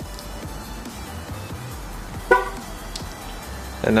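Infiniti G37 coupe's horn gives one short chirp about two seconds in, after the lock and unlock buttons on the key fob are held together to switch the horn chirp back on. Steady background music plays throughout.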